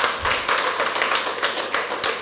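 Audience clapping, many hands at once, in a steady run that fades out just after the end.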